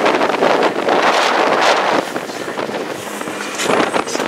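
Wind buffeting the microphone over the rush of a moving boat, heavier for the first two seconds and easing after.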